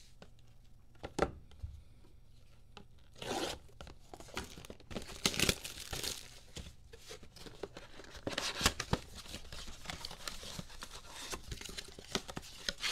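A sealed Mosaic Basketball blaster box being torn open: a single knock about a second in, then tearing and crinkling of its wrap and cardboard from about three seconds in.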